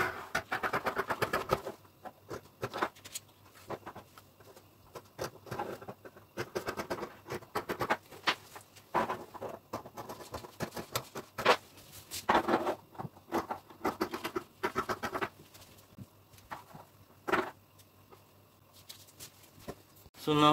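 Fabric scissors cutting through fabric along a paper pattern: irregular runs of short snips with brief pauses between them.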